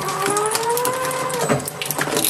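Plastic computer keyboard groaning against the steel cutter discs of an industrial shredder as it is dragged in: one long, pitched, moo-like squeal of about a second and a half that rises slightly and then drops away, with cracks of plastic breaking near the end.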